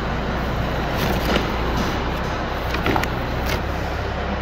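A steady low mechanical drone, with a few short crinkles of the plastic wrapping on a gasket set being handled.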